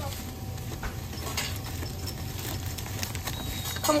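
Busy deli room noise: a steady low hum with a few scattered small clicks and rustles of handling, and a voice coming in right at the end.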